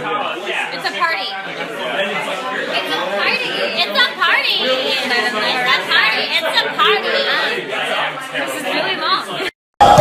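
Several voices talking at once: party chatter in a room.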